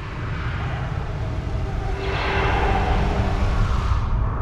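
Low, steady spaceship-engine rumble, swelling about two seconds in.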